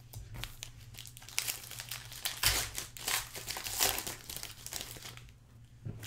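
Crinkling and tearing of a plastic trading-card pack wrapper as it is handled and opened, a dense run of rustles and crackles that is busiest in the middle seconds.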